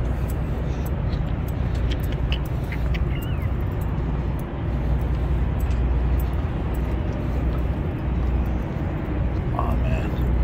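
Wind buffeting a handheld phone's microphone outdoors, a steady low rumble, with faint scattered ticks from walking on a concrete sidewalk.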